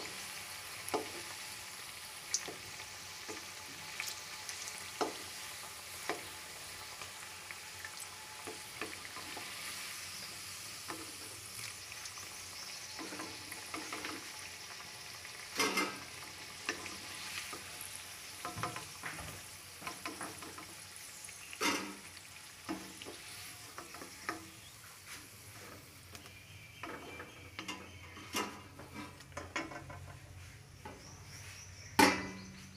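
Besan-battered taro (arbi) pakoras deep-frying in hot oil in a kadai: a steady sizzle, with occasional knocks of a wooden spatula against the pan as they are turned. The sizzle thins near the end.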